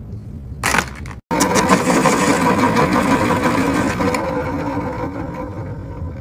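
Electric pencil sharpener running and grinding a Dixon Ticonderoga wood pencil for about three seconds, easing off near the end. A brief rustle comes just before it.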